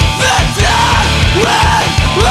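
Loud post-hardcore band recording playing: full band with a steady drum beat and pitched instrumental lines bending up and down.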